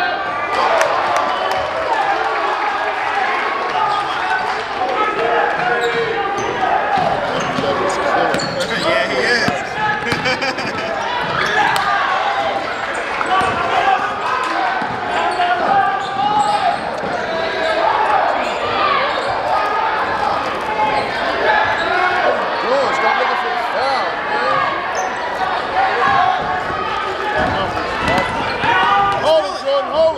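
Basketball bouncing on a gym's hardwood floor during a game, with people's voices throughout.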